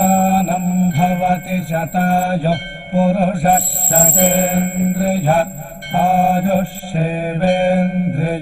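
Devotional title music: a mantra chanted over instrumental accompaniment and a steady low drone, with a high bell-like shimmer near the start and again around the middle.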